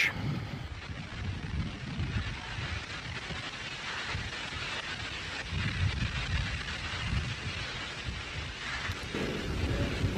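Falcon 9 first stage's nine Merlin 1D engines heard from the ground during ascent: a continuous rumble with irregular low surges.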